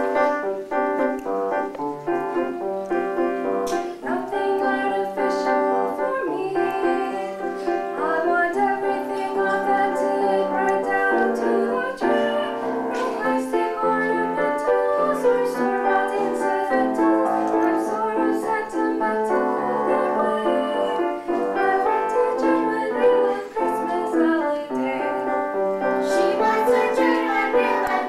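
Piano playing continuously, with chords and melody notes throughout.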